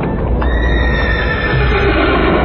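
A horse neighs, one long call starting about half a second in, over the heavy low rumble of galloping hooves.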